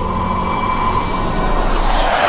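Jet aircraft engine noise from a film soundtrack: a steady high whine over a low rumble, with a rushing noise swelling near the end.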